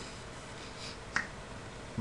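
A single sharp click of a computer mouse button about a second in, over faint steady room hiss.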